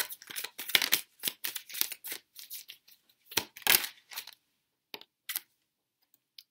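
Tarot cards being shuffled and handled: a run of quick, irregular papery swishes and snaps that thins out after about four seconds, followed by a couple of faint taps as a card is drawn.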